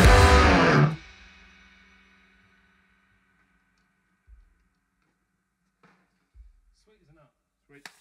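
A rock band with drum kit, cymbals and electric guitar plays loud and stops abruptly on a final hit about a second in. The guitar's last notes ring on and fade out over the next second, leaving near silence broken only by a few soft thumps.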